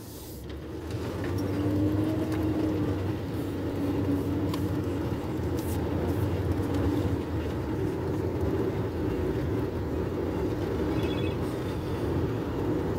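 Car road noise heard from inside the moving car: the engine and tyre rumble grow as the car pulls away from a stop, then settle into a steady drive.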